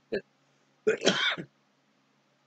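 A man clears his throat once, briefly, between words, about a second in.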